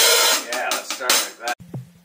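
Band rehearsal: drum kit playing with cymbal and snare hits under the other instruments. It cuts off suddenly about one and a half seconds in, leaving only a few faint clicks.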